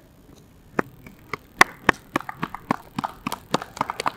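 A few people clapping, starting about a second in: separate sharp handclaps, irregular at first and coming thicker toward the end.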